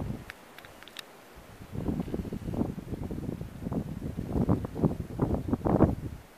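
Wind buffeting the microphone outdoors: a low, irregular gusting rumble that picks up about two seconds in, with a few faint clicks in the first second.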